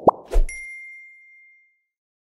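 Editing sound effects: a quick rising bloop, then a sharp hit with a bright bell-like ding that rings out and fades over about a second and a half.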